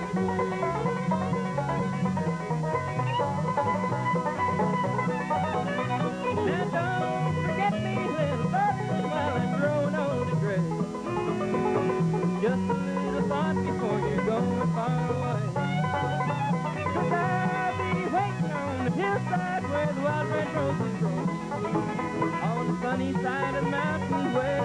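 A bluegrass band playing an instrumental break at a driving tempo: banjo rolls and fiddle over guitar, with upright bass keeping a steady beat.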